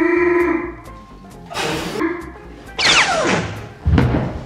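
Comic sound effects over background music: a held pitched note, a brief swishing burst, then a long downward-falling whistle ending in a heavy thud near the end as a person drops to the floor.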